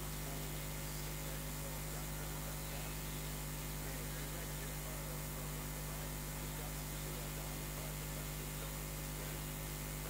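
Steady electrical hum with constant hiss, unchanging throughout, with only faint indistinct sound beneath it.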